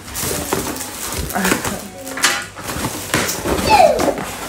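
Cardboard parcel box being pulled and torn open by hand, with rustling and scraping in several short spells. A brief falling vocal exclamation comes near the end.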